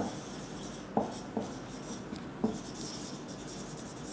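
Marker pen writing on a whiteboard: a soft scratching of the strokes, with three sharper strokes standing out in the first few seconds.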